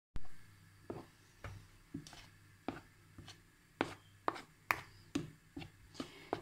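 Metal spoon stirring cocoa powder into cake batter in a bowl: irregular light taps and scrapes of the spoon against the bowl, about two a second.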